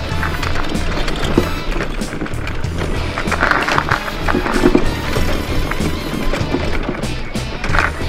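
Background music with a steady beat, over a mobility scooter's wheels and frame rattling and knocking as it rolls over a rough dirt track.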